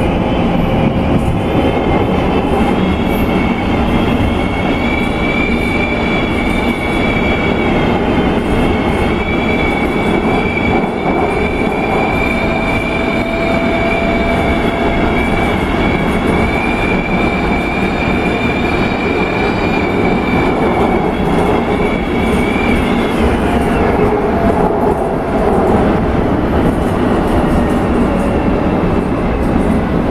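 London Underground S Stock train running at speed through a tunnel, heard from inside the carriage: a loud, steady rumble of wheels on track. Over it sits a high whine that wavers, dips and stops about 23 seconds in.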